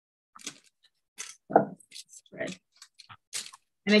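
Hands pressing a crumbly nut mixture into a parchment-lined baking pan: a scatter of short, irregular crackles and rustles from the crumble and the parchment paper.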